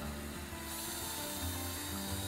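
Cordless drill boring a hole through fibreglass, a steady cutting noise with a higher hiss joining in under a second in, heard under background music.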